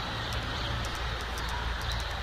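Steady low rumble of passing street traffic.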